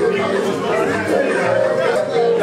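Overlapping chatter of several men's voices over background music.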